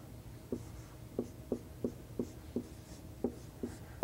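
Chalk writing on a blackboard: a series of about eight short taps and strokes, a few each second, in a quiet room.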